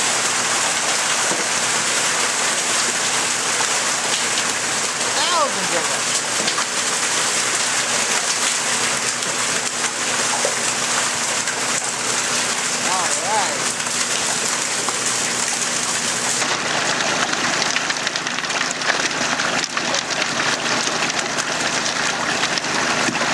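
Steady rush and splash of water as live trout are flushed from a stocking truck's tank and down a chute, the fish churning in the water.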